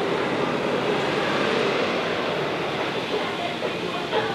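Street traffic with city buses driving past: a steady engine and road rumble that swells in the middle and eases off toward the end.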